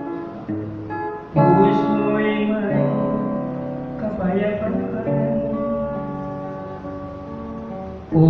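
A man singing a gospel song to his own strummed acoustic guitar; the guitar sustains chords and his voice comes in loudly about a second and a half in.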